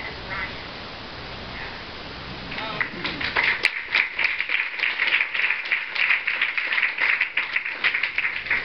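An audience applauding, starting about three seconds in after a few faint words, with a sharp click right at its start.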